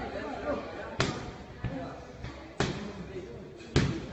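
Three Muay Thai strikes landing on a training target, about a second and a half apart, the last the loudest, over voices in the gym.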